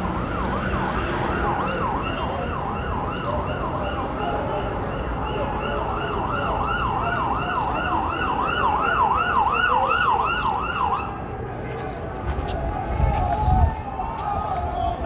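Vehicle siren in a fast yelp, its pitch sweeping up and down about two and a half times a second, stopping about eleven seconds in.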